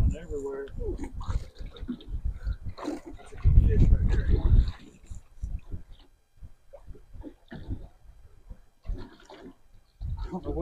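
Indistinct talk, broken up, with a loud low rumble lasting about a second near the middle.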